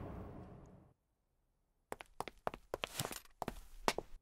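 A quick run of sharp, unevenly spaced taps, about ten of them, starting about halfway through, after a fading tail of sound in the first second.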